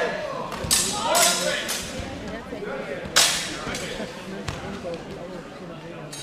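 Steel HEMA training swords clashing and striking during a bout: a few sharp cracks, the loudest and most ringing about three seconds in.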